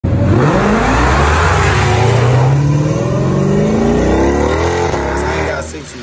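Car engine accelerating, its pitch climbing in two long rises before fading out near the end.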